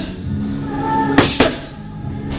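Music playing, with two sharp smacks a little over a second in, one right after the other, fitting boxing gloves landing on focus mitts in a quick combination.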